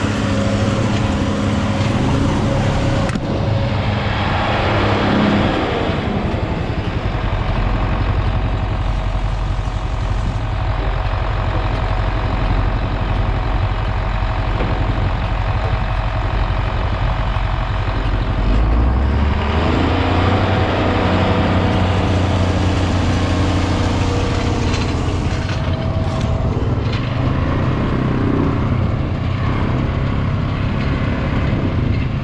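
Diesel farm tractor engine running steadily, its pitch and note changing a few times: a few seconds in, again about six seconds in, and just past the middle.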